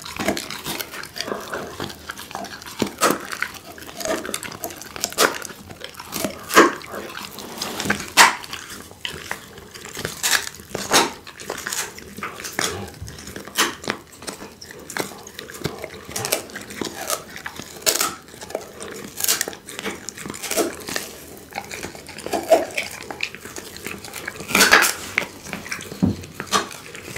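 Pit bull chewing and gnawing a strip of raw meat held close to the microphone: irregular clicks of teeth and smacks of the jaws, with no steady rhythm.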